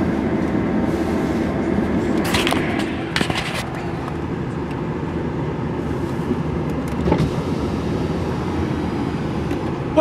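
Steady hum of a car idling, heard from inside the closed cabin, with a couple of brief rustles about two and three seconds in.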